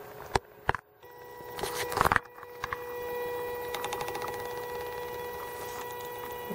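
Extruder stepper motor of an Airtripper V3 Bowden extruder starting up about a second in and running with a steady whine as its drive gear feeds filament, after two short clicks at the start. A brief louder noise about two seconds in.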